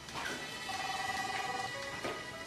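Held electronic tones: two notes sound together for about a second, then a lower note follows near the end, over a faint steady high tone.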